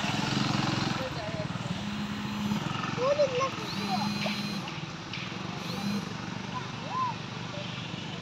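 Motorcycle engine running close by as bikes pass on a muddy road, its low hum strongest in the first second and coming back in short stretches, with scattered voices chattering in the background.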